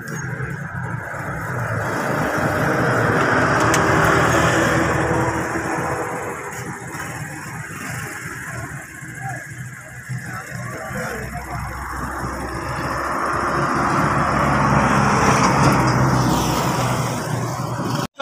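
Road traffic going past: a vehicle's engine and tyres grow louder and fade, peaking about four seconds in, and a second one passes near the end.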